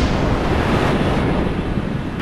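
Whooshing sound effect: a steady rush of noise with a low rumble beneath, easing off slightly near the end.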